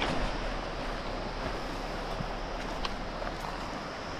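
Steady outdoor rushing noise with a few faint ticks.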